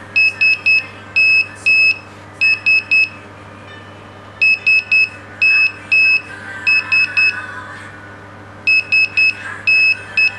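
Electronic buzzer module sounding Morse code in high, even-pitched beeps: three short, two long, three short ("SMS", the old Nokia text-message tone), repeated about three times.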